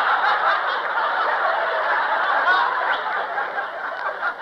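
Studio audience laughing at a punchline, one long wave of laughter that eases slightly toward the end, heard on an old radio broadcast recording with dull, muffled treble.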